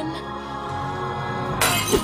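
Melodramatic TV-movie score holding a sustained chord, then a sudden bright crash of noise near the end, like a shatter or cymbal hit.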